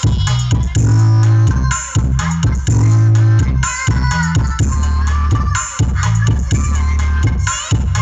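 Electronic dance music played loud through a horn-loaded 15-inch 'classic' speaker cabinet under test, with heavy bass notes repeating about once a second under a busy upper line.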